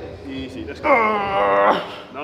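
A man's drawn-out strained groan of effort, about a second long, starting about a second in, as he pushes a heavy rep on a shoulder press machine.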